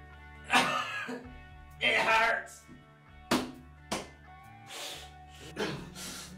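A man's short wordless vocal outbursts, grunts and cough-like sounds, about five in all, two of them sharp, over background music with a steady low tone.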